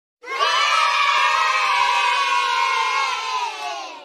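A crowd of children cheering and shouting together, many voices at once. It starts just after the beginning, holds steady, then fades away near the end.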